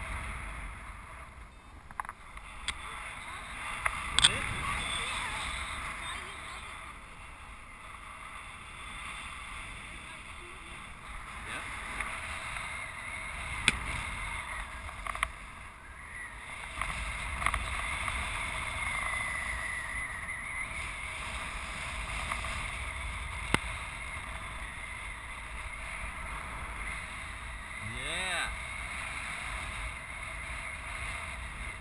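Wind rushing over the microphone during a paraglider flight, a steady rumble and hiss, with a few sharp clicks scattered through it.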